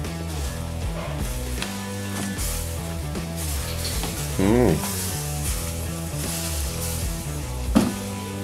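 Background music with a steady bass line and guitar. A short voice sound about halfway through.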